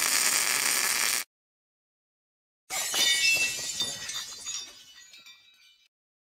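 Logo sound effect: a steady sparking hiss that cuts off about a second in. After a short silence comes a glassy, clinking shimmer that fades out over about two seconds.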